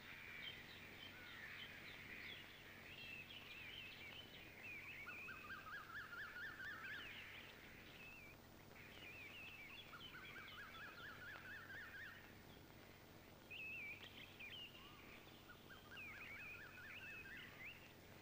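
Faint birdsong from several small birds chirping and trilling, with a few runs of fast repeated notes.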